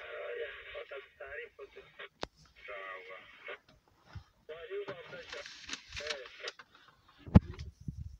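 A person's voice sounding thin, as if through a radio speaker, speaking in three stretches. A single sharp knock near the end is the loudest sound.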